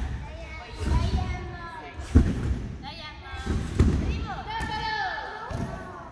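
Three heavy, deep thuds about a second and a half apart: a gymnast bouncing on a trampoline and landing on thick gymnastics mats, with girls' voices calling out over them.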